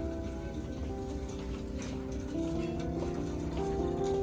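Background music: a soft melody of held notes that change pitch every half second or so.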